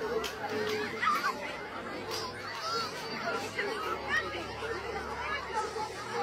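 Indistinct chatter of several voices talking over one another, with no clear words.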